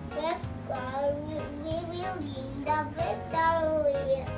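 A young child's voice reciting a short Bible verse in a drawn-out, sing-song way over light background music.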